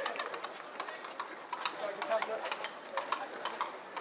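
Footsteps of a crowd of runners on a wet road, a dense, irregular stream of quick footfalls, with voices talking in the background.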